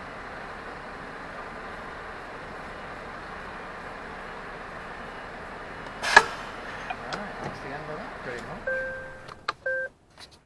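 Steady engine and cab noise inside a lorry cab as it creeps along. About six seconds in there is a single sharp loud click, then a few lighter clicks and knocks, and two short electronic beeps near the end.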